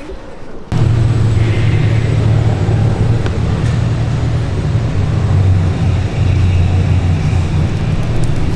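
A vehicle engine running steadily: a loud low rumble that cuts in suddenly under a second in and holds with little change.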